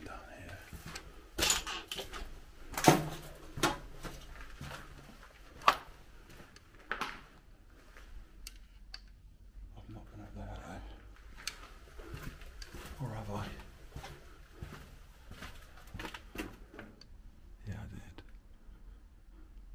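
Scattered knocks and scuffs of footsteps and debris underfoot on a littered floor, several sharp ones in the first seconds, with faint low murmured speech later on.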